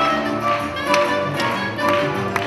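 Small salon orchestra with violin, guitars and double bass playing a 19th-century Venezuelan dance piece, with sharp taps about every half second over the music.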